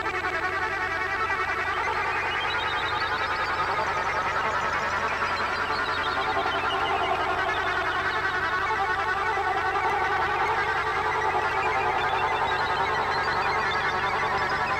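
Electroacoustic music: a dense, rapidly fluttering electronic texture, steady in loudness, whose upper band sweeps upward a couple of seconds in and again near the end.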